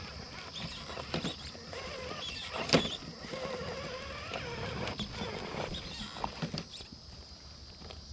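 Electric RC rock crawler's motor and gears whining as it climbs over rock, the pitch wavering up and down, with scattered clicks and knocks of tires and chassis on stone. One sharp knock comes a little under three seconds in.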